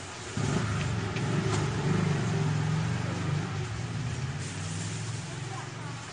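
A motor vehicle engine running, a low hum that starts about half a second in and wavers in pitch.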